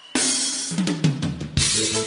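A reggae track starting with a drum-kit intro: after a short quiet gap, a crash cymbal and kick drum come in at once a moment in, followed by snare and drum hits over bass, with a second cymbal crash near the end.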